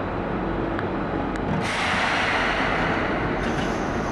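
Seibu 2000 series electric commuter train standing at the platform, about to depart, under a steady low rumble. A loud hiss starts about one and a half seconds in and lasts nearly two seconds, followed by a shorter, higher hiss near the end.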